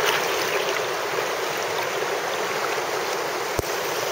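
Shallow rocky mountain stream flowing steadily, a close, even rush of water. A single sharp knock about three and a half seconds in.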